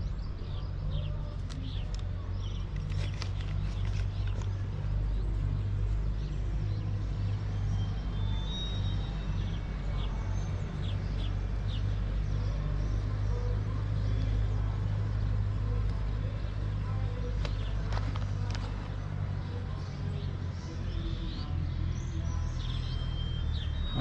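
Cable car's steady low rumble and hum as it runs down along its haul cable, with birds chirping now and then.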